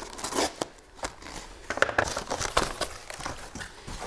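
Scissors snipping through a corrugated cardboard shipping sleeve, with a run of short sharp cuts and the cardboard crinkling and rustling as it is opened.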